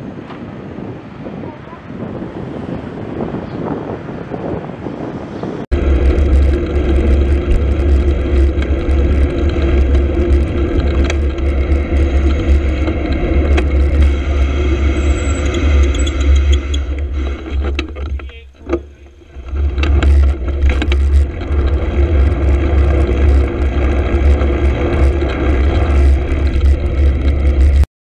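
Traffic and road noise heard from a moving two-wheeler, with heavy wind rumble on the microphone. The rumble comes in suddenly about six seconds in and drops away briefly around eighteen seconds before returning.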